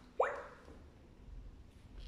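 Clementoni Doc educational robot giving a single short electronic blip that sweeps quickly upward in pitch as a button on its head keypad is pressed, about a fifth of a second in.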